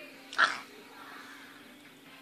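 A single short vocal squeak about half a second in.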